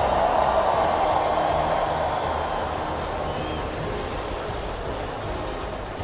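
A large stadium crowd cheering, loudest at the start and slowly dying away, with music playing underneath.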